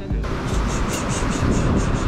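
Wind rumbling on the microphone and surf washing, under faint background music.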